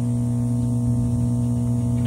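Aerobic septic system's air pump running, a steady low hum with many overtones.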